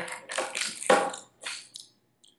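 Plastic wrapper of a Butterfinger candy bar crinkling as it is picked up and handled, in about four short rustling bursts.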